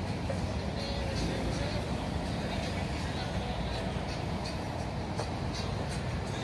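Steady outdoor street noise: a continuous rumble of road traffic.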